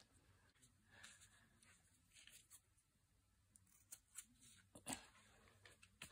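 Faint snips of fabric scissors cutting small notches into the edge of the fabric: a few short, separate clicks spread over several seconds, the sharpest one near the end.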